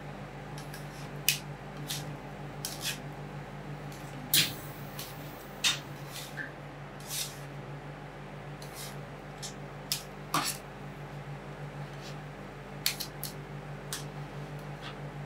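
Two metal spatulas chopping and scraping cream on a frozen steel ice-cream-roll plate: irregular sharp taps and scrapes, with a few louder clacks, over a steady low hum.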